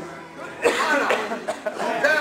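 Men's voices: a sudden loud vocal outburst about two-thirds of a second in, followed by more short exclamations.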